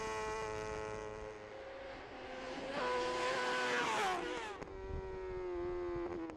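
Honda superstock racing motorcycle's engine at speed, picked up by its onboard camera. It holds steady revs, rises slightly, then drops in pitch about four seconds in as the bike eases off. A rush of wind noise comes just before the drop.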